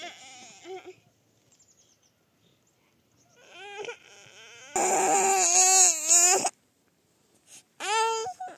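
A toddler crying: soft whimpers, then one loud, wavering wail of about two seconds a little past the middle.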